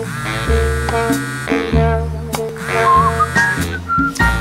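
A mobile phone ringing: a melodic ringtone over a vibrating buzz that comes in pulses about half a second long.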